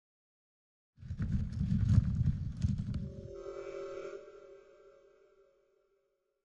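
Logo intro sting: a deep rumble with sharp hits starts about a second in and lasts about two seconds, then a held chord rings on and fades away.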